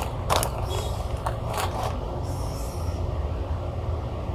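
Plastic snack packaging crinkling and rustling as it is handled, with a few sharp crackles in the first two seconds, over a steady low rumble.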